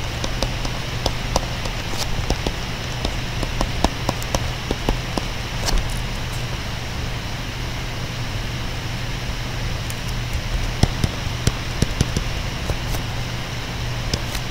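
Steady electrical hum and hiss with scattered small clicks and taps, more of them in the second half: a stylus tapping and writing on a tablet screen.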